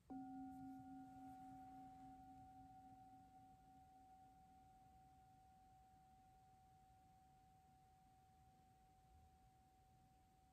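A singing bowl struck once with a wooden mallet, ringing on. Its low tone fades within about five seconds, and a higher, clear tone lingers faintly throughout. The strike marks the start of a time of silent prayer.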